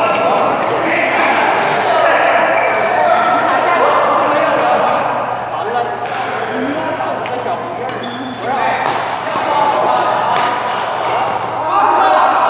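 A badminton rally: sharp hits of rackets on the shuttlecock and thuds of footsteps on the court, with people talking throughout.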